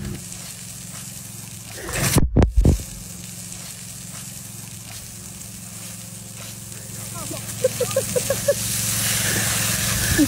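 Water hissing as it sprays under pressure from a broken buried water pipe, over a steady low hum. There is a loud surge about two seconds in, and a short run of quick voice-like sounds near the end.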